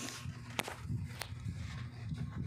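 Low background rumble with two short, sharp clicks, the first about half a second in and the second about 0.6 s later.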